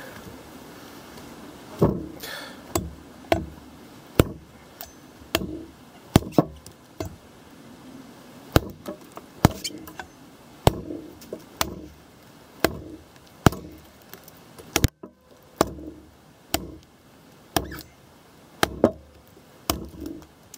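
An Ontario RTAK II large full-flat-ground knife chopping into a fallen log: about twenty sharp blade strikes into the wood, each with a short thud, coming roughly once a second after a brief pause at the start.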